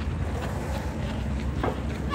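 Wind buffeting the phone's microphone: a steady, low rumbling noise with no voices.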